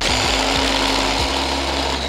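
Inalsa hand blender with its chopper attachment, switched on abruptly and running steadily as it chops a green chutney mixture in the bowl; a loud, even motor whir.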